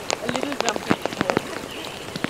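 Monsoon rain falling, with many sharp, irregular drop hits close to the microphone over a steady wash of rain; voices faintly behind.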